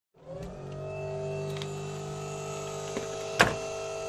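Electric motor of an Atlas crane's hydraulic unit switched on, starting just after the start and then running with a steady whine. A single sharp knock comes about three and a half seconds in.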